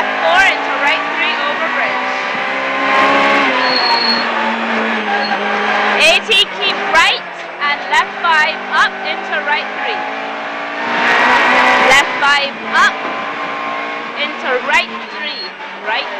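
Rally car heard from inside the cabin, its engine revving up and dropping back repeatedly through gear changes and corners, with tyre squeal and sharp knocks from the road or gravel hitting the car.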